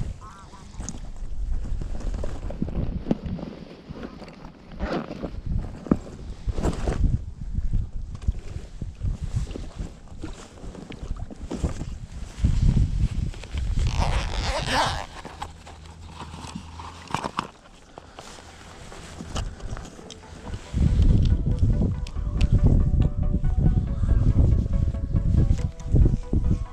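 Footsteps and rustling through dry grass and brush, with wind on the microphone. Background music comes in about 21 seconds in.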